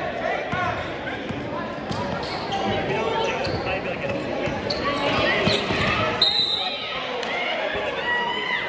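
Indoor basketball game: a basketball bouncing on the hardwood court, with short sneaker squeaks and indistinct crowd voices echoing in the gym.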